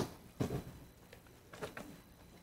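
A few faint knocks and rustles in a quiet room: a sharp click at the start, a soft thump about half a second in, and a short cluster of small knocks near the end.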